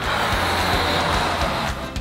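Breath blown hard into a rubber balloon to inflate it: a steady airy rush lasting nearly two seconds, over background music.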